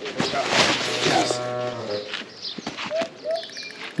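A cow mooing: one long, low call lasting about a second and a half.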